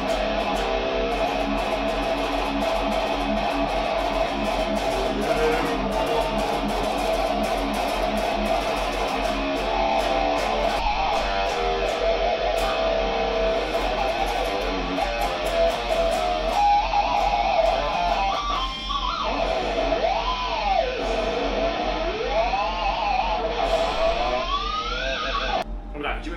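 Electric guitar playing sustained notes and chords, with string bends rising and falling in pitch over the last several seconds.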